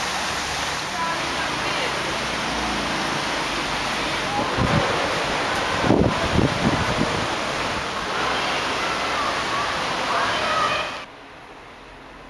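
A steady, loud rushing noise with faint voices in it, which gives way abruptly to much quieter room sound near the end.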